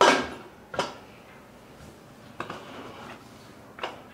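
Lid of an aluminium pressure cooker being fitted and pressed closed, metal clanking on metal: a loud ringing clank at the start, a second clank just under a second later, then two lighter knocks further on.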